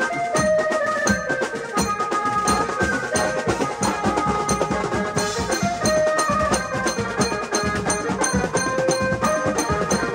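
Street band drumming: two drummers beat kits of metal-shelled drums and cymbals in a fast, dense rhythm. Over it runs a melody of held notes that change every second or so.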